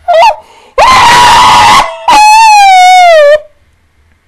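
A woman shrieking with laughter: a short yelp, then a loud raspy scream about a second long, then a long high squeal that slides gently down in pitch and stops.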